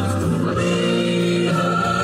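Music: voices singing in chords, holding long notes that change every second or so.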